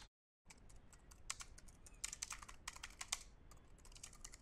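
Faint typing on a computer keyboard: irregular, quick key clicks that start about half a second in, after a moment of dead silence.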